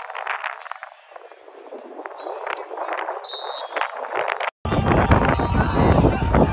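Indistinct shouts and voices of players and onlookers around a football field. About four and a half seconds in, a cut brings in louder sound with wind buffeting the microphone.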